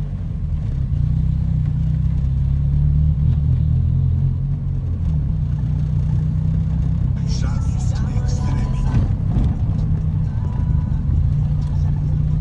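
Car sound system pumping deep, sustained bass notes from a slowly moving car, with faint voices about two-thirds of the way through.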